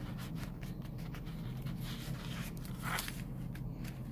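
Fingers rubbing and pressing copper foil tape down onto paper to seal the connection over an LED wire: quick, soft, scratchy rubbing strokes, with a slightly louder scrape about three seconds in.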